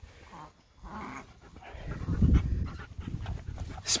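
A dog panting in quick, rapid breaths, growing louder in the second half.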